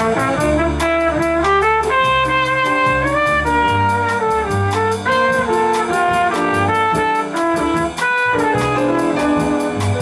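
Trumpet playing a melodic jazz solo of held and stepping notes over a live rhythm section, with upright bass notes underneath and a steady tick of cymbal strokes from the drum kit.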